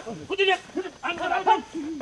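A high-pitched human voice in a run of short, repeated cries.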